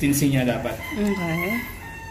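A man's voice, with a rooster crowing in the background: one long high call from about half a second in.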